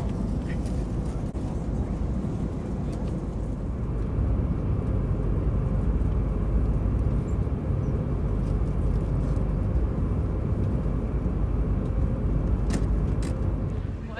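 Airliner cabin noise in flight: a steady low drone of engines and rushing air, with a faint steady hum. A couple of light clicks near the end.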